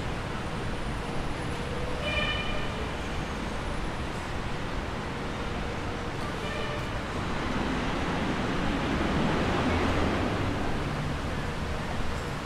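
City street ambience: a steady wash of traffic noise that swells for a few seconds from about eight seconds in, with a couple of brief high-pitched sounds around two and six seconds in.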